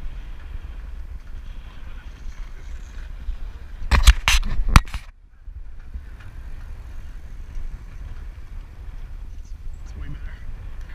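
Jogging footfalls and wind rumble on a head-mounted GoPro, with a quick cluster of four or five loud knocks about four seconds in, followed by a brief dip in level.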